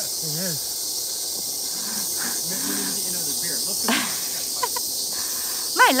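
Steady, high-pitched chorus of cicadas in the trees, filling the background, with quiet talk beneath it.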